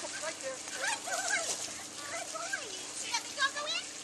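Faint, indistinct voices of onlookers talking, with birds chirping briefly near the end and a low steady hum underneath.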